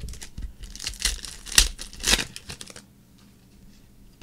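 Foil wrapper of a 2013 Totally Certified football card pack being torn open and crinkled, a run of crackling tears that dies away about three seconds in.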